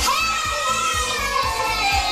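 A group of young children calling out together in high voices over background music with a steady beat.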